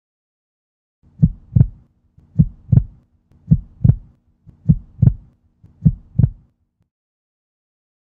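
Heartbeat sound effect: five slow double thumps (lub-dub), a little over a second apart, with a faint low hum beneath, then silence.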